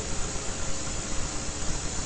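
Steady hiss and low rumble of the recording's background noise, with a faint steady hum.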